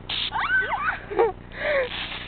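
A short hiss of an aerosol silly string can spraying, then children's high-pitched squeals and yelps overlapping for about a second.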